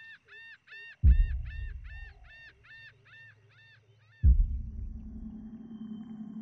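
Horror film soundtrack: a fast, even series of short high calls, about three a second, stopping just after four seconds in. Two deep booming hits land over them, one about a second in and one just after four seconds, each dying away slowly, and the second leaves a low steady drone.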